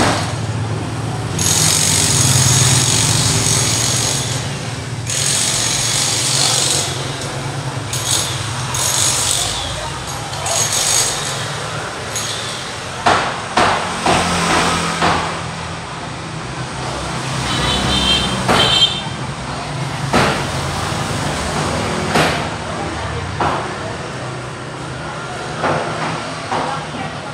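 Street noise: motor vehicle engines running, with indistinct voices and a few knocks.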